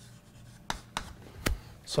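Chalk writing on a blackboard, with three sharp taps of the chalk striking the board.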